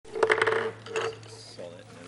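A quick cluster of sharp knocks and clatter close to a microphone about a quarter-second in, and another near one second, each with a brief ringing tone, over a low steady electrical hum. Faint voices murmur in the background.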